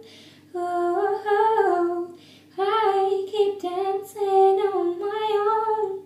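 A woman humming a wordless melody in short phrases, with brief breaths between them.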